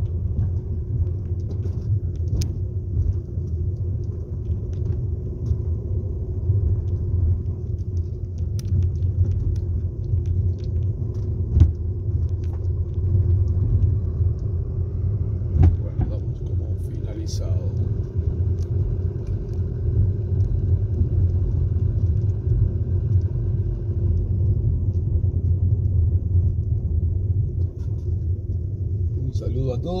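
Steady low rumble of a car's engine and tyres, heard from inside the moving car on city streets. A few short sharp knocks or rattles come through, the loudest about twelve and sixteen seconds in.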